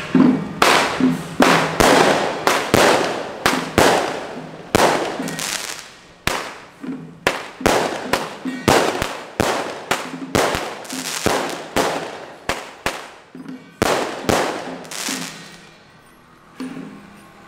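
Firecrackers going off in an irregular string of sharp bangs, two or three a second, each trailing off in a short echo; the string dies away near the end.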